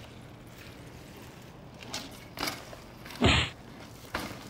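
Bicycle hopping up onto a brick wall ledge: a few short scuffs and knocks of tyres on brick, then one much louder impact a little past three seconds in.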